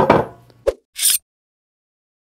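A single knock of a cast iron skillet set down on a wooden cutting board, followed about a second in by a short hiss, then silence.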